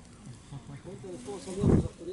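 Faint voices talking in the background, broken near the end by one short, loud, low-pitched sound.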